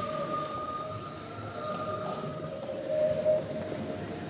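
A steady held note with a fainter tone an octave above, wavering slightly and swelling about three seconds in, over the low rustle and murmur of a crowd moving about.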